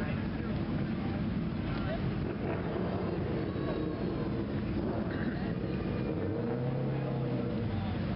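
Busy street noise: a steady low rumble of traffic with indistinct voices talking in the background, and a brief low hum about seven seconds in.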